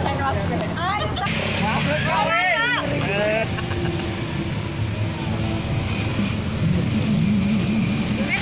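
A motor vehicle engine running steadily, its pitch wavering briefly near the end, with people's voices heard briefly over it twice in the first half.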